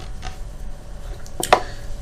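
Low steady room noise with a couple of brief sharp clicks about a second and a half in.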